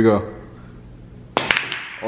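A pool shot: two sharp clicks of pool balls in quick succession about a second and a half in, the cue tip striking the cue ball and then ball striking ball.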